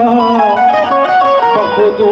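Qawwali instrumental interlude: a harmonium plays a melodic run of short held notes stepping up and down, over the ensemble's steady rhythm, between sung lines.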